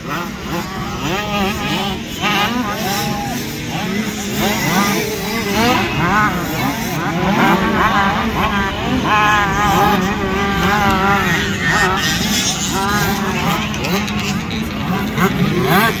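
Several small two-stroke motocross bikes of the 65cc youth class revving hard around a dirt track. The engine notes rise and fall again and again as the riders accelerate and shift.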